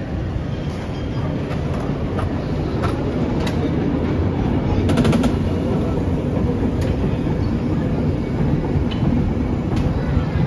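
San Francisco cable car rolling past close by on its rails: a steady low rumble that swells about halfway through, with scattered clicks and clanks, a quick run of them about five seconds in.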